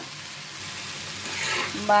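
Tomato and onion mixture sizzling in oil in a pan, with the scrape of a metal spatula stirring it; the sound swells louder about halfway through as the stirring picks up.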